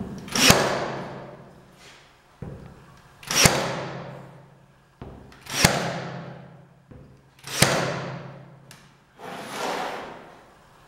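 A 23-gauge pin nailer firing pins into a laminate strip four times, about two seconds apart. Each shot is a sharp snap with a short build-up before it and a noise after it that fades over about a second. Another build-up starts near the end.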